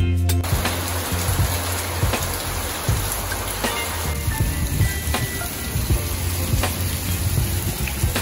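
Heavy rain pouring down, a steady hiss that starts about half a second in, over background music with a low beat.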